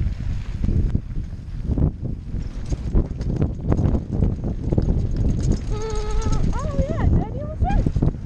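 Mountain bike rattling and rumbling down a rough dirt trail, with wind buffeting a helmet-mounted camera. About six seconds in, a wavering high-pitched tone slides up and down over it for about two seconds.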